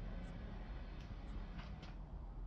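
Faint footsteps and phone-handling noise on a concrete floor: a low steady rumble with a few soft scuffs, about one near the start and several in the second half.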